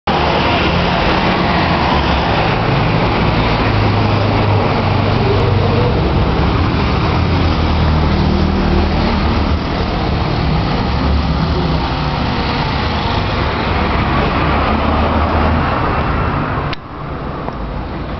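Street traffic noise with a truck engine running close by, a steady low rumble under the road noise. About seventeen seconds in there is a click and the noise drops suddenly.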